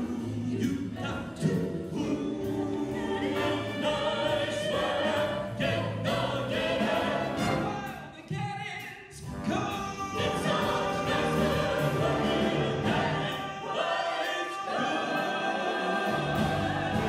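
Jazz big band, with horns, guitar, bass and drums, playing behind a small group of vocalists singing together. The music thins out briefly about eight to nine seconds in, then comes back in full.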